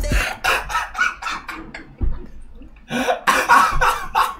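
A man laughing hard and breaking into repeated coughs in short bursts, after a rap beat cuts off just after the start.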